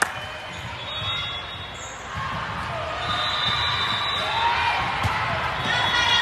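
Volleyball game sounds in a large gym: a ball bouncing on the hardwood floor right at the start, then players' voices calling out across the echoing hall, with a ball contact about five seconds in.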